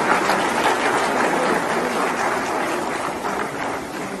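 Audience applauding in a large hall: steady clapping that eases off slightly toward the end.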